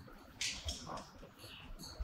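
Faint, brief rustles of paper sheets being handed over, a few small bursts close together.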